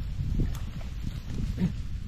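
Wooden pole jabbed into a muddy bank, giving several dull thuds, with a steady rumble of wind on the microphone.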